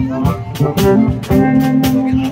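Live blues band playing an instrumental passage between sung lines: held electric bass and guitar notes over a drum kit keeping a steady beat on the cymbals.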